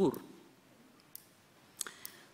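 A woman's spoken phrase ends, then a quiet pause holds two faint, sharp clicks, one about a second in and one near the end.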